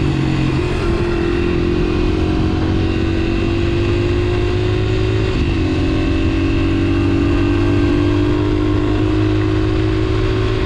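Honda XR80R's small single-cylinder four-stroke engine running at high revs under full throttle at speed. The engine note is steady, dips slightly in pitch about halfway through, then slowly climbs again.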